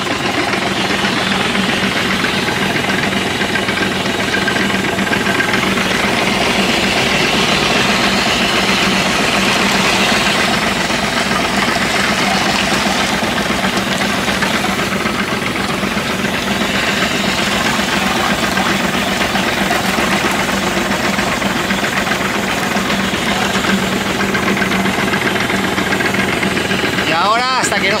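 Tractor engine running steadily, its power take-off driving the sprayer's diaphragm pump so the tank keeps agitating while paint is added.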